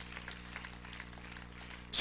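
Faint, steady low hum made of several held low tones, with a few faint ticks.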